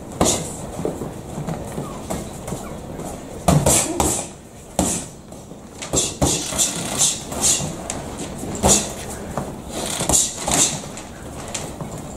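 Gloved punches landing during boxing sparring: irregular sharp smacks, often two or three in quick succession, with hissing bursts alongside them.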